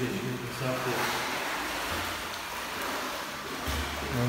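Swimming-pool water splashing and sloshing as a swimmer moves through it, a steady wash of noise. There are a couple of low bumps, about two seconds in and near the end.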